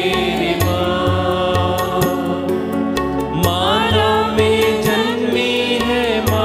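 Women singing a Hindi devotional worship song, with instrumental accompaniment keeping a steady beat.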